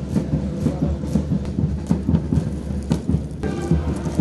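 Marching boots of a squad of cadets striking a hard parade ground in step, about two stamps a second, over a steady low rumble.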